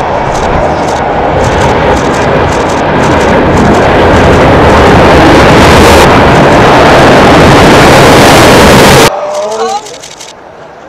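Roar and rumble of a high-rise tower's demolition collapse played in reverse: a loud rushing noise that swells over about nine seconds and then cuts off suddenly, like an explosion run backwards.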